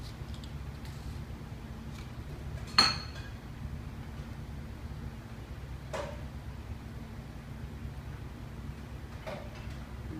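Bar tools and glassware handled while a lemon-peel garnish is cut and added to a cocktail: one sharp clink with a short ring about three seconds in, the loudest sound, then a softer click about six seconds in, over a steady low hum.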